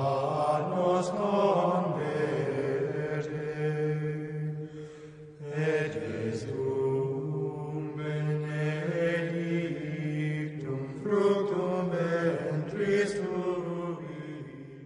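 Slow sung chant in low men's voices, long held notes in phrases with short pauses about five and eleven seconds in.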